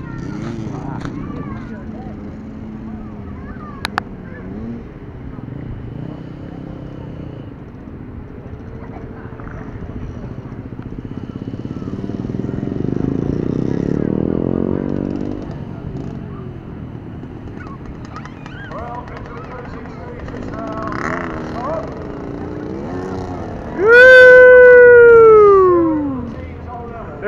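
Voices and children's chatter at an outdoor playground. Near the end, a high voice lets out one loud call that falls in pitch over about two seconds.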